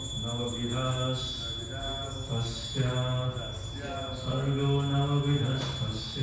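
A man chanting a Sanskrit verse into a microphone as a slow, melodic recitation, holding long notes on a steady pitch between short breaks.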